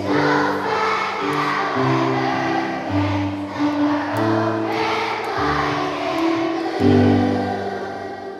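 A large group of children singing a patriotic song together over steady instrumental accompaniment. The loudest note comes near the end, and then the sound begins to fade.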